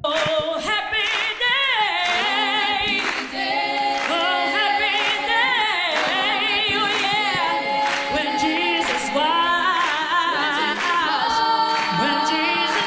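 A woman singing unaccompanied into a handheld microphone, high and loud, with a wide vibrato and quick sliding runs.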